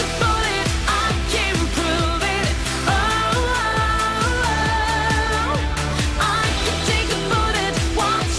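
Pop song with a sung vocal line over a steady beat and bass.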